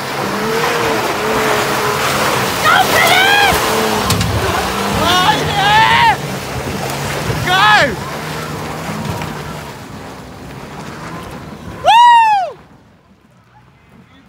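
Toyota Prado 120-series 4WD engine working steadily as the vehicle climbs a rutted dirt track, fading away after about ten seconds. Onlookers whoop several times, loudest about twelve seconds in.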